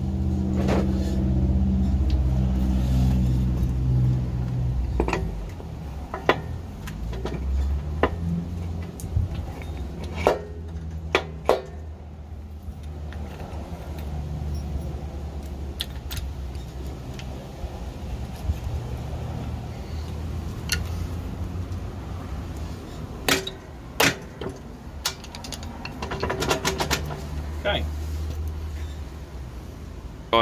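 Hand assembly on a ride-on mower's transaxle axle: scattered metal clinks and knocks as washers and a rear wheel are fitted onto the axle, some in quick clusters. A steady low hum sounds under the start and fades out about four seconds in.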